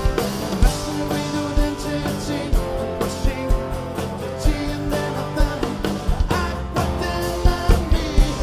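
Live band playing a rock song: strummed acoustic guitars over a drum kit's steady beat, with a man singing.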